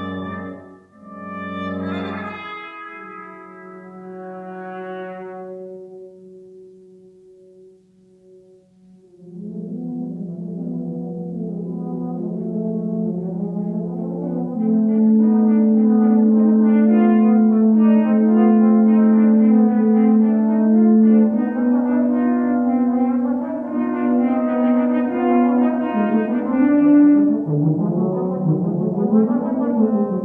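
Brass quintet of two trumpets, horn, trombone and tuba playing, one trumpet muted. Two short accented chords open, then die away over long-held low notes. From about nine seconds in a swell builds into loud sustained chords with moving lines above them.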